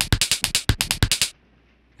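A rapid run of sharp hits, about a dozen a second, that stops abruptly about a second and a half in.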